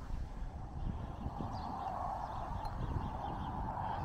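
Outdoor background noise: wind rumbling on the microphone, with a steady distant hum that swells from about a second and a half in.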